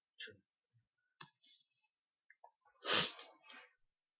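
A few computer keyboard and mouse clicks, then a short, loud breath close to the microphone about three seconds in, followed by a quieter one.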